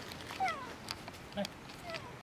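Macaque giving short, high calls that slide down in pitch, about four in quick succession, the loudest about half a second in.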